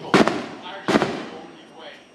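Two sharp, loud bangs about three-quarters of a second apart, each ringing out briefly.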